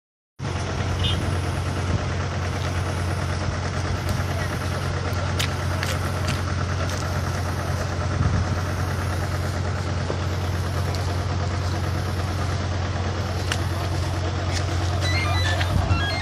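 A vehicle engine idling with a steady low hum, under indistinct voices and a few sharp clicks.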